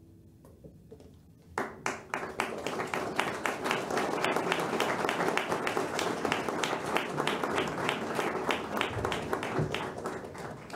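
Audience applauding, starting about a second and a half in after a moment of quiet, then many hands clapping steadily.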